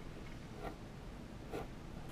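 A pen writing on a sheet of paper: faint, irregular strokes of the tip across the page.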